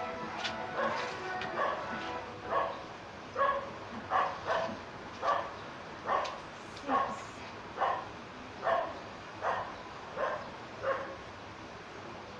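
A dog barking repeatedly, about a dozen barks less than a second apart, starting a couple of seconds in and fading near the end.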